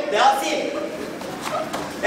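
Excited voices of children and a man calling out during a playful scuffle, loudest at the start and then dropping to lower chatter, with a few light knocks in between.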